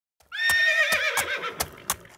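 A horse whinnies once, a long wavering call that slowly drops in pitch and fades, over the clip-clop of its hooves knocking two to three times a second.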